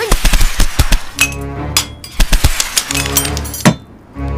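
Dramatic sound effects of hanging sacs bursting and wooden darts shooting out and striking wood: a rapid run of sharp cracks and thuds, thickest in the first second and recurring through the rest, over background music.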